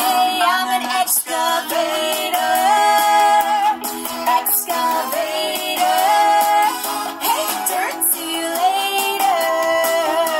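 A pop song about an excavator playing back, with sung vocals over backing music. It comes through a laptop speaker and sounds thin, with no bass.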